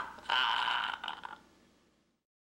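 A person's laughter tailing off in one long, drawn-out breathy laugh that fades away about a second and a half in.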